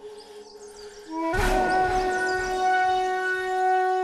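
Dramatic film background score: a quiet held drone, then about a second in a sudden hit and a long, loud held horn-like note that sustains to the end.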